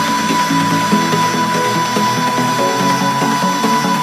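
Electronic club dance music from a nonstop remix mix. A stepping synth melody plays with the deep bass dropped out, over a steady high tone.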